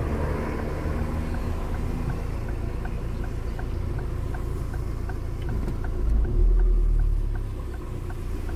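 Low engine and road rumble inside a car's cabin, with the turn-signal indicator ticking steadily about three times a second as the car waits to turn left. The rumble swells louder for a second or so near the end.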